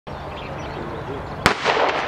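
A single shotgun shot about one and a half seconds in, with a short trail of echo after it.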